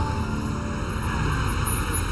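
Steady low rumble of a vehicle engine running.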